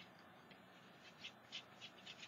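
Faint light scratchy rustling of a hand handling and brushing over a painted card: a quick run of about six soft ticks starting about halfway through, otherwise near silence.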